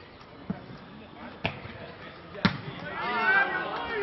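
A Faustball being hit and bouncing during a rally: three sharp knocks about a second apart, the third the loudest. Players' voices call out near the end.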